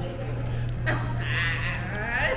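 A high-pitched, quavering cry, starting a little past halfway through, over a steady low hum.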